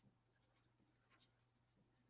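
Near silence: a faint low hum with a few very faint stylus scratches as handwriting is made on a pen tablet.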